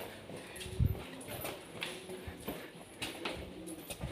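Footsteps on stone paving and steps, with a faint low cooing of a bird.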